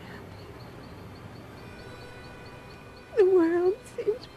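A woman's tearful voice after a pause: about three seconds in, one drawn-out, wavering sung note that dips and then holds low, as the song breaks into crying.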